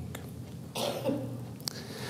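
A person coughing once, briefly, about three quarters of a second in.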